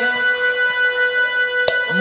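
Harmonium holding one steady note between sung lines, with a single sharp click near the end.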